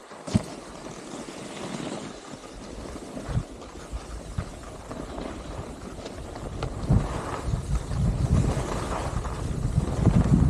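Skis sliding over groomed snow with wind buffeting the microphone. The low wind rumble grows louder over the last few seconds as the skier picks up speed.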